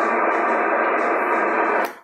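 Steady hiss of band noise from a Kenwood TS-140S transceiver receiving on upper sideband, squeezed into the narrow voice band of its filter, with no station coming through; it cuts off abruptly near the end as the transmitter is keyed again.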